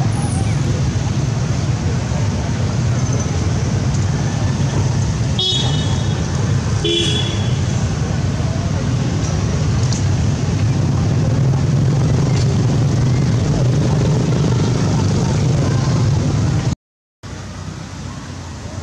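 A loud, steady low rumble, of the kind that road traffic or a running engine makes, with two short high-pitched toots or squeaks about five and seven seconds in. The sound cuts out for a moment near the end.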